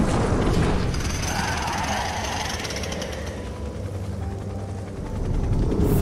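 Animated sci-fi battle sound effects: mechanical whirring and clanking over a steady low rumble.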